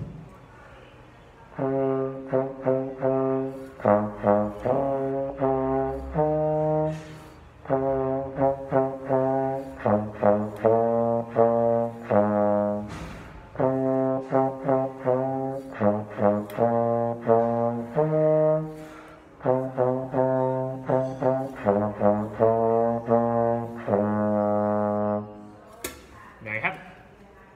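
Slide trombone playing a simple practice tune built on four notes (B flat, C, E flat and A flat), mostly short separated notes in four phrases with brief breaths between them.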